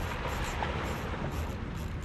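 Steady wash of wind and moving tidal water, with a low rumble of wind on the microphone.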